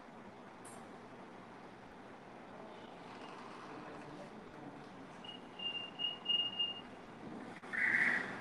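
Steady background hiss of room noise picked up by an open microphone on a video call. A faint high steady tone comes and goes in short pieces for about a second and a half past the middle, and a brief louder sound follows near the end.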